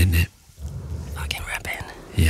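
A brief spoken word, then close-miked whispering into a studio microphone, ASMR-style.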